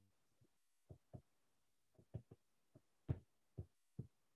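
Faint, soft taps of a stylus on a tablet screen, about half a dozen at uneven intervals, with near silence between them.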